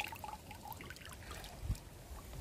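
Faint trickling and dripping of water draining from a lifted mesh hand net, with a soft low thump near the end.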